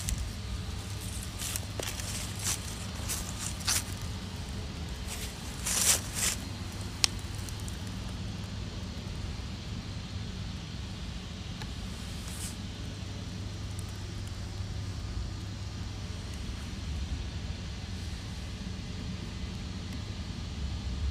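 A steady low rumble of outdoor background noise. It is broken by a handful of brief scuffing noises in the first seven seconds, the last of them a sharp click.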